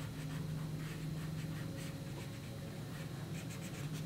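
Felt-tip marker rubbing on paper in short, repeated colouring strokes, over a steady low hum.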